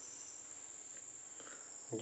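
Faint steady high-pitched whine over low background hiss, with a faint tap or two in the second half.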